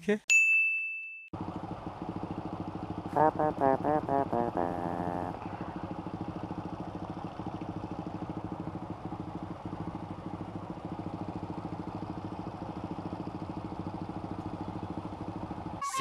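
A small motorcycle engine idling steadily in stopped traffic, with a short high-pitched beep just before it. Someone laughs briefly a few seconds in.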